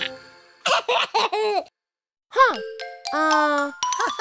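A children's song cuts off, then a cartoon baby giggles in a few short bursts. After a brief silence comes a single voiced exclamation, and pitched sounds with steady tones lead into the next song.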